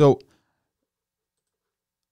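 A man says one short word, "So," with a falling pitch, then near silence.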